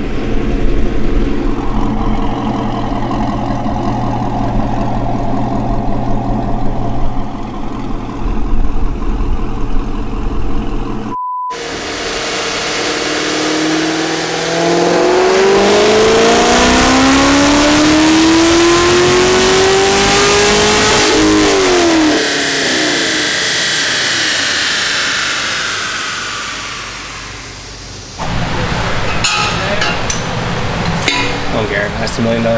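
Chevrolet Camaro SS's 6.2-litre V8 making a wide-open-throttle pull on a chassis dyno: the engine note climbs steadily in pitch for about eight seconds, then falls away as the throttle is lifted and the rollers coast down. Before it, about ten seconds of an engine running steadily, cut off by a short beep.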